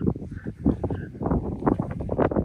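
Footsteps crunching through dry steppe grass with irregular rustling, and wind buffeting the microphone.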